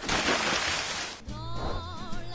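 A rushing, hiss-like noise in the first second fades out. Then music comes in with a wavering melody over a steady bass.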